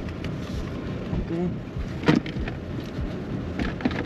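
Handling and rustling sounds as a pickup truck's center console lid is opened, with one sharp click about two seconds in, over a steady low rumbling noise.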